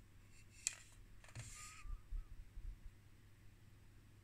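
Faint handling noise as a power supply module on its metal mounting plate is turned in the hand: a sharp click under a second in, a short scrape a moment later, then a few soft low bumps.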